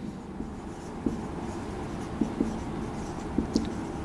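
Marker pen writing on a whiteboard: soft strokes with a few light ticks as the pen moves across the board.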